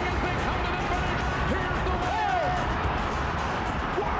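Music playing over the race audio of a horse race finish: the track announcer's call and the racetrack crowd's noise, at a steady level.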